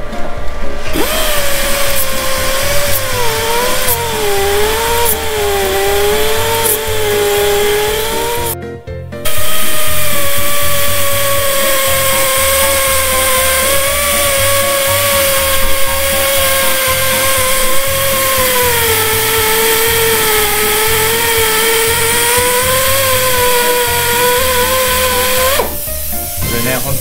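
Handheld pneumatic grinder running against a corroded aluminium CBX400F wheel rim, a hissing whine whose pitch wavers up and down as the tool is pressed on and eased off. It stops briefly about nine seconds in, then comes back louder and steadier. Background music with a low beat underneath.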